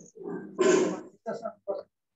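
A man's voice making short, indistinct utterances, with one louder, rougher sound a little over half a second in.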